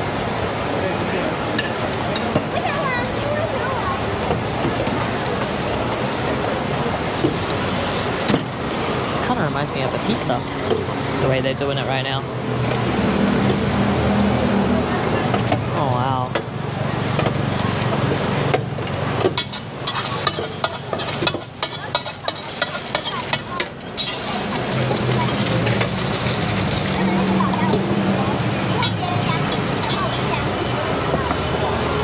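Busy night-market street noise with background voices and chatter. About two-thirds of the way in comes a run of sharp knocks, a cleaver chopping a scallion pancake on a steel counter.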